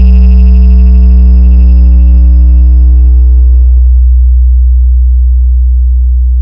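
One very loud, deep electronic bass note held from a DJ 'hard bass' competition mix, slowly fading. Its higher overtones die away about four seconds in, leaving only the low bass.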